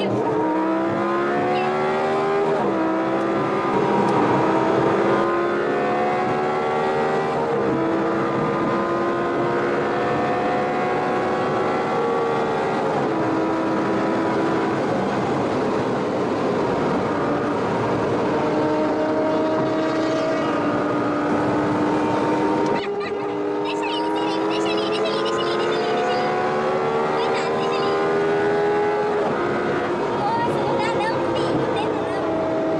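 Audi R8 engine heard from inside the cabin, accelerating hard at highway speed. Its pitch climbs, drops at each upshift and climbs again, several times over, with road and wind noise underneath.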